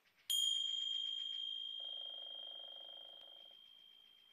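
A single high ding, struck once and ringing on, fading slowly over about three seconds.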